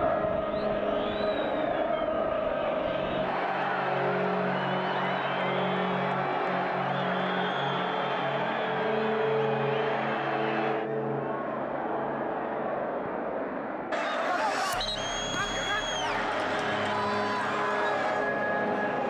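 Football stadium crowd noise: fans chanting and shouting. The sound jumps abruptly at each cut between clips of match sound.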